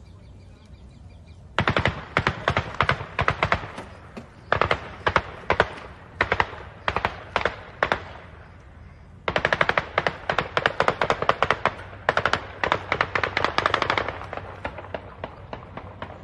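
Automatic gunfire in rapid bursts: strings of fast shots begin about one and a half seconds in, pause briefly around the middle, then come back as a denser run of fire that thins out near the end.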